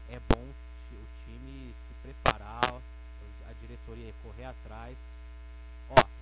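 Steady electrical mains hum in the studio's microphone and mixer feed, with two sharp clicks, one early and one a couple of seconds in.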